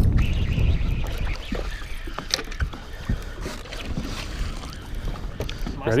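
Steady low rumble of wind and choppy lake water around a small fishing boat, heard on a chest-mounted action camera, with scattered light clicks and taps.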